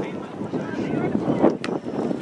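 Wind on the microphone and scattered voices of players and spectators, with one sharp thud of a soccer ball being kicked about one and a half seconds in.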